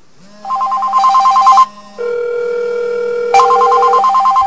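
Cell phone ringing inside an aluminium-foil wrap with a hole in it: a loud warbling electronic trill in two bursts, with a steady lower tone between them. The call is getting through the hole in the foil.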